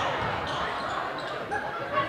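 Basketball game sounds in a school gym: faint crowd and player voices with the ball and sneakers on the hardwood court, and a soft knock about one and a half seconds in.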